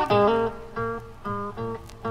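Instrumental opening of a rock band recording: guitar playing short, clipped chords in a steady rhythm, about two a second, over low bass notes.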